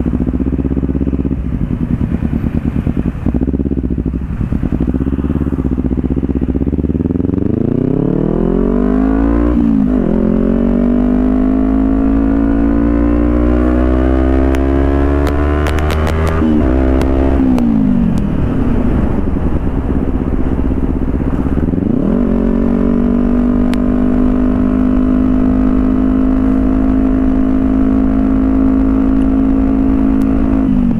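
Motorcycle engine heard from the rider's seat while riding. It runs at low revs at first, then revs up steeply with a gear change about nine seconds in and keeps climbing until about sixteen seconds. It eases off, revs up again a little past twenty seconds and then holds steady revs at cruising speed.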